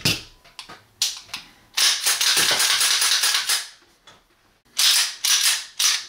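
A loaded Dan Wesson Vigil 1911 pistol, steel slide on an aluminum frame, being cleared by hand: sharp metallic clicks, a longer stretch of clatter about two seconds in, and another burst of clicks near the end as the slide is worked.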